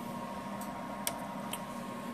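Three faint clicks about half a second apart as controls on the CB radio or test bench are switched, over a steady low electronic hum and a thin steady high tone from the bench equipment.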